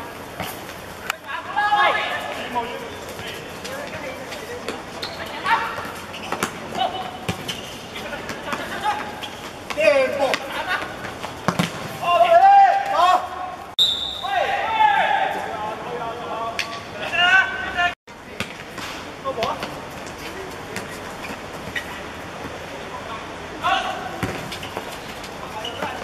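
Live pitch sound of a football match: players shouting to each other over the steady hum of the ground, with the short thuds of the ball being kicked.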